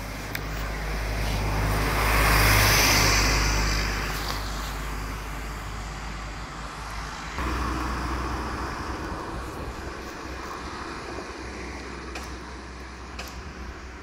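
Road traffic passing: one vehicle goes by, loudest about two and a half seconds in, and a second comes past about seven seconds in and fades away slowly.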